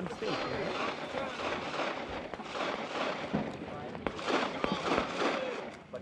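A few scattered, sharp handgun reports from shooting on other stages of a practical pistol match, heard over the murmur of people talking.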